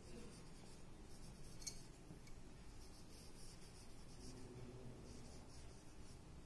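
Faint rubbing and light squeaks of a whiteboard marker tip writing in cursive on a whiteboard, a series of short strokes.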